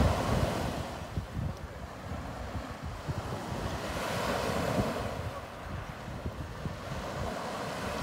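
Sea surf washing ashore: a wave slowly swells to a peak around the middle and then eases back.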